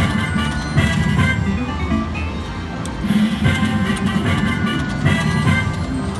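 Konami Treasure Voyage slot machine playing its free-games bonus music: a repeating, chiming electronic melody over a steady beat as the reels spin and stop.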